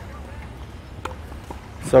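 Tennis racquet striking the ball on a slow serve, a single short knock about a second in, followed by a fainter knock half a second later.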